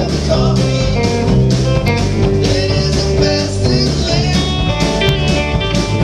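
Live country-rock band playing an instrumental passage: electric and acoustic guitars, electric bass and drums keeping a steady beat.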